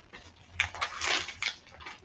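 Paper rustling and crinkling in irregular strokes, as pages of a Bible are turned to find a verse.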